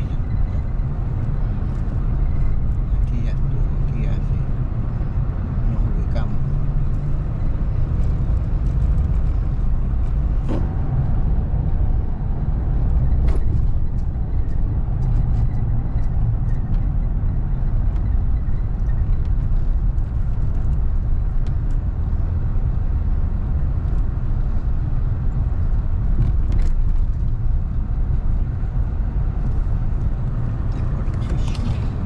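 Steady low rumble of road and engine noise from a car driving on a freeway, heard inside the cabin, with a few faint ticks.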